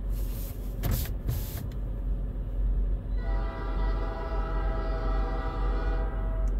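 CN SD60 diesel locomotive's air horn sounding one long steady chord, starting about three seconds in, over a low steady rumble.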